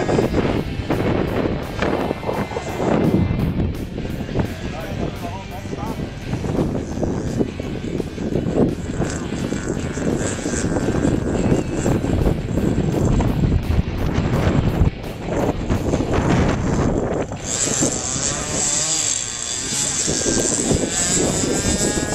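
A radio-controlled model airplane's motor and propeller running as the plane flies and makes a touch-and-go landing, its pitch rising and falling with the throttle. A higher, steadier whine comes in about three-quarters of the way through.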